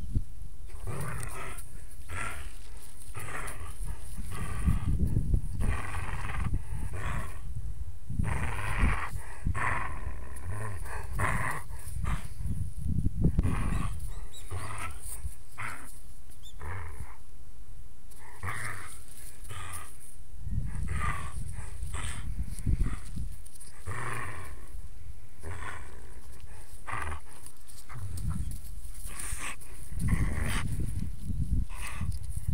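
Borzoi carrying a stick in its mouth right at the microphone: irregular breathing and mouthing sounds, over low rumbling and knocking from the stick jostling the camera.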